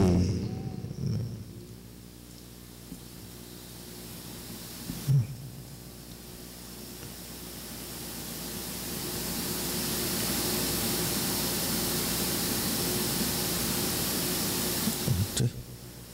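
Steady background hiss over a faint low hum. The hiss swells over a few seconds in the middle and then holds level, with one dull thump about five seconds in.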